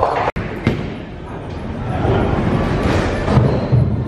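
Bowling alley hall noise: background music and the chatter of people, with a few low thuds in the second half.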